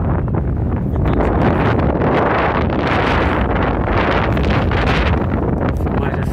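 Strong wind buffeting the microphone: a loud, steady rush of noise that swells into a stronger gust in the middle.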